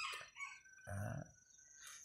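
A rooster crowing, the end of its call trailing off just after the start; a man's short "à" follows about a second in.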